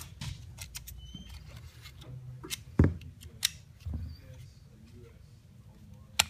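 Small metal clicks and scrapes of a screwdriver working in a polymer pistol frame, with one sharp louder click a little before the middle as the Ruger American's takedown lever is popped out, followed by a few dull knocks of parts set down on the mat.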